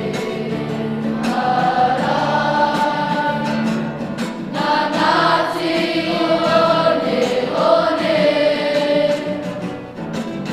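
A choir of schoolchildren singing a waiata together: their school pepeha set to music, sung in sustained melodic phrases.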